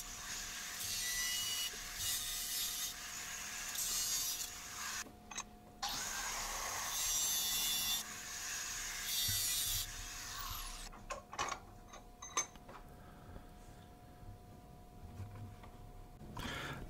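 Angle grinder with a cutoff wheel cutting steel square tubing: a steady motor whine under several bursts of hissing abrasive cutting as the wheel bites into the metal. The grinder stops about two-thirds of the way through, leaving only a few faint clicks.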